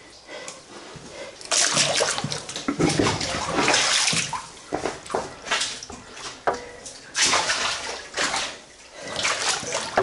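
A person wading through water in a flooded tunnel, the water sloshing and splashing in a string of irregular surges about a second apart.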